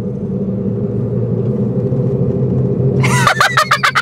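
Steady low drone of a car's engine and road noise inside the moving cabin. About three seconds in, a man laughs loudly in quick repeated bursts of breath.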